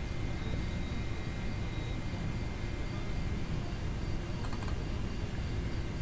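Steady room noise, a low hum and hiss with a faint high whine, and a couple of faint clicks a little over four seconds in from a computer mouse being clicked.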